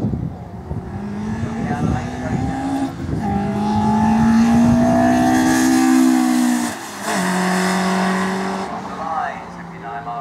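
Peugeot 106 sprint car's 1600cc four-cylinder engine accelerating hard past, its note climbing in pitch as it approaches. A brief dip comes about seven seconds in, then a steady lower note fades as the car moves away.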